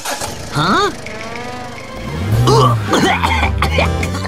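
Cartoon soundtrack: a car engine's low rumble sets in about halfway through as the exhaust puffs smoke, and a character coughs and gags on the fumes, over background music.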